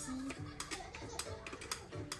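Plastic stacking blocks clicking and knocking against each other in a string of short, irregular clicks as a tall block tower is handled and pressed together.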